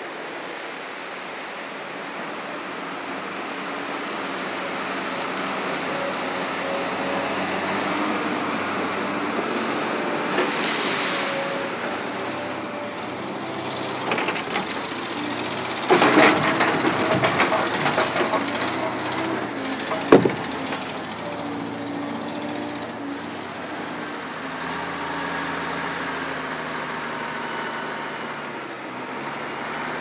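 Diesel log loaders working in a log yard, their engines running steadily. Heavy knocks and clattering come about halfway through, as logs are handled, followed a few seconds later by one sharp bang.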